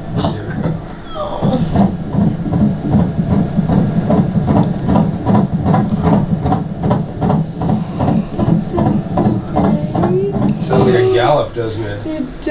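Fetal heartbeat picked up by an ultrasound machine's Doppler and played through its speaker: a fast, even train of whooshing pulses that starts about two seconds in and runs until near the end.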